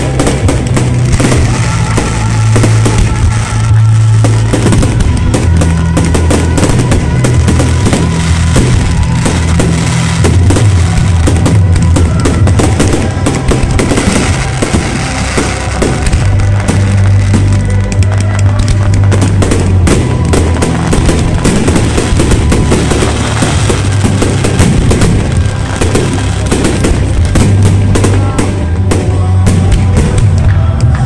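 Aerial fireworks bursting and crackling in rapid succession throughout, over loud show music with sustained bass notes.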